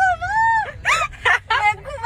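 A young woman's high-pitched voice giving one long, drawn-out squeal, then several short bursts of giggling.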